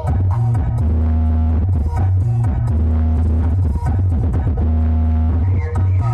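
Loud DJ music played through a huge stacked carnival sound system, with heavy bass that dominates the mix, recorded on a phone.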